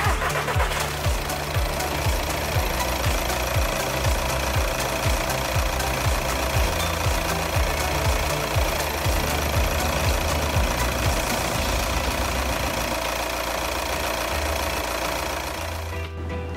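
VW Passat B7's diesel engine idling with a steady clatter, run with a filler funnel in the coolant expansion tank to fill and circulate coolant after a thermostat replacement. Background music with a steady beat plays over it.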